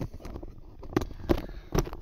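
Handling noise as a camera is moved and re-aimed: four or so short knocks and rubs over a low rumble.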